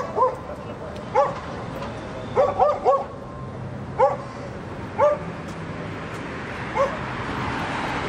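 A dog yipping: short, high barks about once a second, with a quick run of three in the middle.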